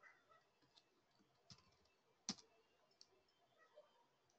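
Faint, sharp clicks of a computer mouse, a handful of single clicks with the loudest about halfway through, over near silence.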